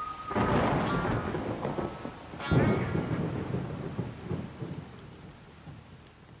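Two rumbling thunderclaps with rain: one about a third of a second in, then a louder one about two and a half seconds in. Each rolls off and the sound fades away toward the end.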